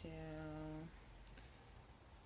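A woman's voice drawing out one word ("to...") on a single held pitch for about a second, then quiet room tone with a faint click.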